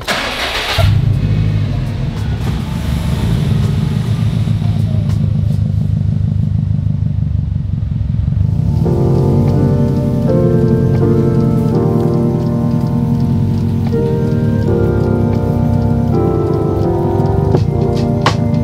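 A 2014 Subaru WRX STI's turbocharged flat-four engine starting about a second in and then idling, its exhaust note low and steady. Music comes in over it about halfway through.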